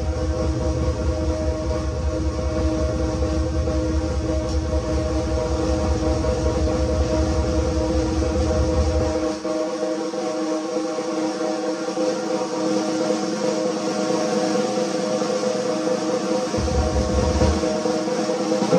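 Large drum kit played in a fast, unbroken stream of strokes, a paradiddle-based solo, with the drums and cymbals ringing on under it. The bass drum pulses beneath the first half, drops out about nine seconds in, and comes back briefly near the end.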